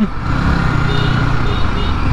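Yamaha R15 V3 motorcycle's single-cylinder engine running steadily at low speed through a turn, with road and wind noise on the bike-mounted microphone. Faint high tones are heard briefly in the middle.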